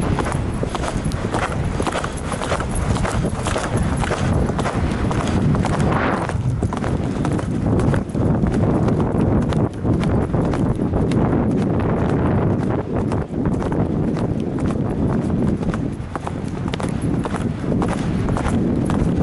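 A mare's hoofbeats on turf at cross-country pace, a fast, steady rhythm picked up by a helmet camera, over a continuous low rush of wind noise.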